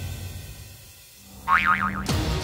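Background music dies away, then about one and a half seconds in a cartoon 'boing' sound effect plays: a wobbling tone that swings up and down several times for about half a second.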